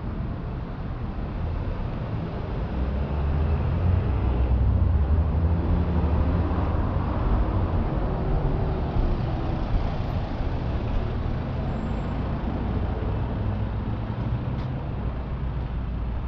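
Street traffic: a motor vehicle passes, its low engine and tyre noise swelling to its loudest about four to six seconds in, then easing back to a steady background rumble of road traffic.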